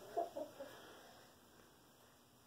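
Chickens clucking softly: a few short, low clucks in the first half-second or so, then quiet.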